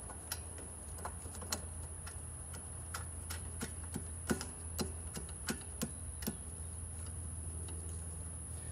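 Channel-lock pliers clicking against a metal lock nut as it is turned tight on a photocell fitting at a breaker panel: irregular light metallic clicks, one or two a second, over a steady low hum.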